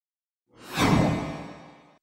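An outro whoosh sound effect for a logo reveal. After a moment of silence it swells to a peak and then fades out over about a second.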